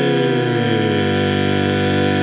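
Barbershop quartet chord sung a cappella by one man, overdubbed in four parts, held on the closing 'E!' of the tag. In the first second the lower voices move to the final chord, which is then held steady.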